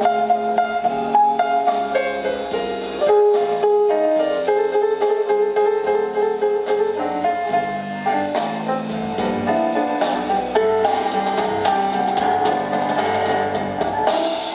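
A live blues band playing an instrumental passage of a slow ballad, with no vocals: held electric keyboard notes and guitar over a drum kit keeping time. It is heard over the PA from out in the crowd.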